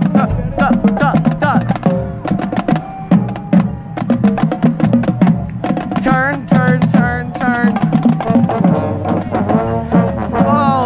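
High school marching band playing its field show live: a percussion-driven passage of rapid drum and block-like hits under melodic lines, with notes that slide up and down about six to eight seconds in.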